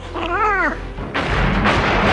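A short squealing cry that rises then falls in pitch. About a second in, a loud rushing, rumbling noise starts and keeps on.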